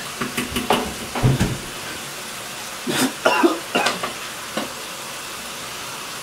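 Bathroom sink sounds: a steady hiss of running water, broken by short scrubbing, clattering and spitting-like noises of teeth-brushing and washing up. The short noises come thickest about three seconds in.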